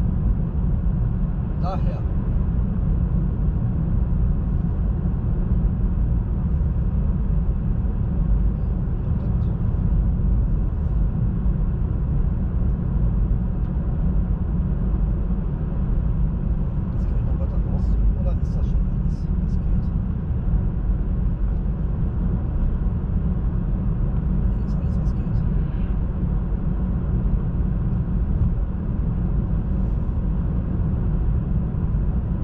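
Steady low rumble of tyre and road noise inside a moving Hyundai IONIQ's cabin, driving at an even speed.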